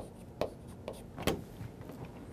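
Chalk writing on a chalkboard: a series of short, sharp taps and scrapes about two a second, one a little longer a little past the middle.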